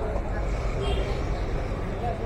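Busy street ambience: indistinct voices of passers-by over a steady low rumble of city traffic.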